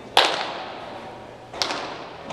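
Two sharp pops of a baseball smacking into a leather glove on catches, the first just after the start and louder, the second near the end, each echoing in a large indoor hall.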